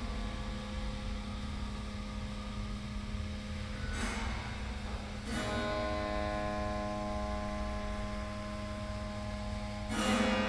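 Strings of a dismantled piano's frame ringing in sustained, slowly fading tones, struck afresh twice, about four and five seconds in, over a steady low hum.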